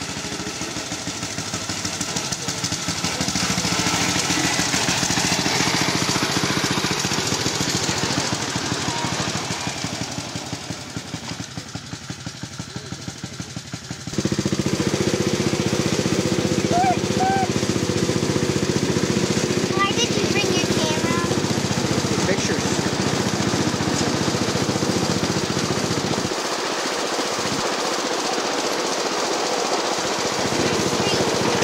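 Small engine of a 7½-inch-gauge ride-on miniature locomotive running with a rapid, even chugging. It gets suddenly louder about halfway through.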